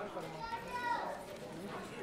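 Overlapping chatter of many voices in a hall, children's voices among them, with no music playing.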